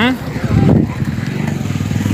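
Steady low rumble of a moving motor vehicle, with a loud, muffled low thump about half a second to just under a second in.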